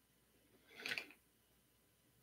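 Near silence, with one short, soft sound just under a second in.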